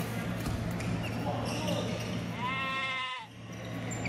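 Indoor badminton rally: light shuttlecock hits over the steady hum of a large hall. A short, high squeal, falling slightly in pitch, comes about two and a half seconds in.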